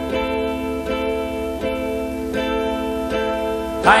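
Guitar strumming ringing chords, a fresh strum about every three-quarters of a second, with no singing over it.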